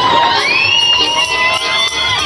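Crowd cheering and shouting over Ukrainian folk dance music, with two long high-pitched calls, the second higher than the first.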